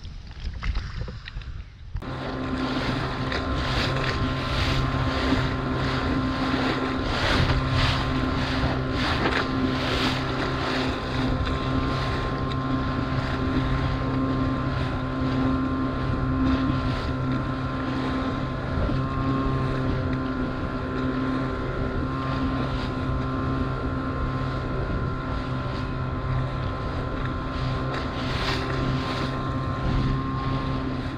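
Outboard motor of an inflatable boat running at a steady speed, with water rushing along the hull and wind on the microphone. The sound starts abruptly about two seconds in.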